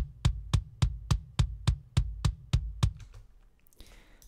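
Soloed, heavily compressed metal kick drum from Superior Drummer 2 (a sampled Pearl Masters Extra kick) playing a steady run of beats, about three and a half a second. Each beat has a deep low body and a sharp click on top. It stops about three seconds in.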